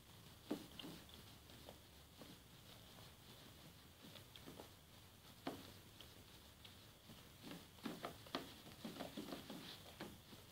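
Near silence with faint, scattered clicks and taps from a toddler handling a small glass dish, more of them close together near the end.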